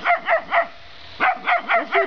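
A puppy yapping in short, high-pitched barks: three quick ones, a pause of about half a second, then four more.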